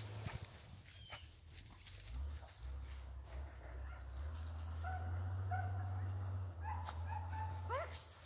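Beagles baying faintly, a few short held notes about five to eight seconds in, the last one sliding upward, as the hounds give voice on a rabbit's trail. A low steady rumble runs underneath.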